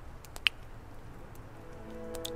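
Quiet outdoor ambience with a low steady rumble and a single sharp click about half a second in; soft background music with sustained notes fades in during the second half.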